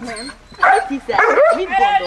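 A dog barking, a quick run of loud barks from about half a second in.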